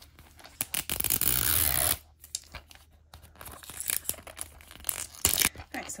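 Plastic shrink-wrap label being torn open and peeled off a plastic toy capsule ball: one loud tear about a second in, then crinkling and crackling as the film comes away.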